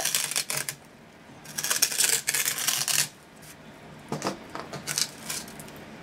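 A pen tip scratching and digging into green floral foam as it is dragged around a wooden block, in three bursts of scratchy, crunchy scraping with short pauses between.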